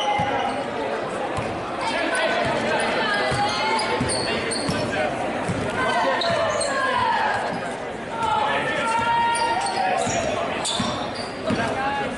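Basketball being dribbled on a hardwood gym floor, a series of short bounces, with voices calling out and echoing in the gym.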